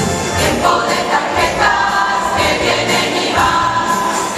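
A large church choir singing a Christmas cantata number with instrumental backing.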